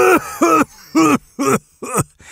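A man's performed cough imitating a giraffe struggling to cough: a run of loud, voiced, hacking coughs, about one every half second, each with a rise and fall in pitch. It is a 'post-bong hit cough'.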